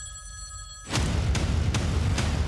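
A telephone ringing: a bright ring of several steady high tones lasting about a second. Then loud, deep, rumbling trailer music cuts in.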